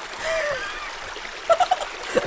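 A small woodland stream running steadily.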